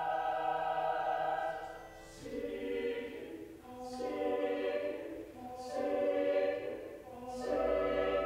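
Mixed choir of men's and women's voices singing a series of held chords, with short breaks between phrases about every one and a half to two seconds.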